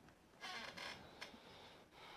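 Faint creaking squeals from an excavator demolishing a building, with a single light knock a little after a second in.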